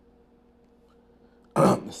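A man clearing his throat once, loudly and abruptly, about one and a half seconds in. Before it there is only a faint steady room hum.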